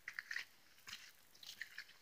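Faint footsteps scuffing and crunching on a dirt trail with leaf litter, a few soft scattered steps.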